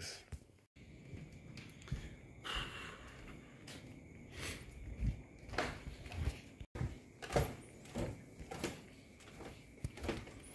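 Scattered soft knocks and rustling from a handheld camera being carried in the dark, with a short hiss about two and a half seconds in.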